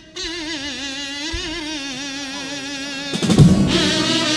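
A single voice holds one long, wavering note with wide vibrato that slides slowly downward, opening a Cádiz carnival comparsa pasodoble. About three seconds in, the bass drum and snare come in loudly with the fuller group.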